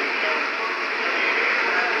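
Broadcast audio between commentary lines: a steady hiss of background noise with faint voices underneath.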